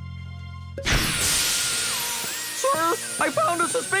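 Cartoon magic sound effect: about a second in, a sudden sparkling, fizzing hiss bursts out as pink magic gushes from a small vial, then slowly fades over background music.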